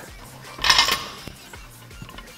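A weight plate slid onto the steel sleeve of a barbell, giving a short metallic scrape and clink a little under a second in, over quiet background music.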